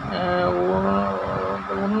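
A person talking, with one long drawn-out syllable held at a steady pitch for about the first second and a half before normal speech resumes.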